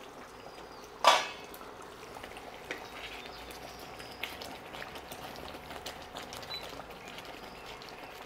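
A pan lid clinks once with a short ring against a steel pan about a second in, as the lid comes off. After it comes the faint bubbling and small pops of a thick yogurt-based methi curry simmering on low heat.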